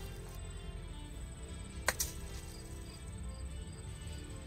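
Golf club striking a ball: a sharp click, doubled in quick succession, about two seconds in.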